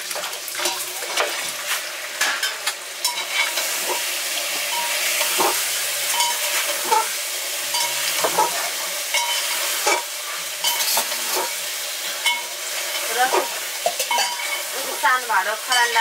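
A metal spoon stirring and scraping food frying in a metal pan, with a steady sizzle and frequent clinks of the spoon against the pan.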